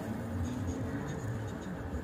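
Quiet car cabin at a standstill: a low steady rumble with faint scratchy handling noise from the held phone.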